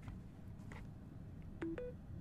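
Two short electronic beeps, a lower note then a higher one, from a Samsung Galaxy Z Flip 4 set on a wireless charging pad: the signal that wireless charging has started.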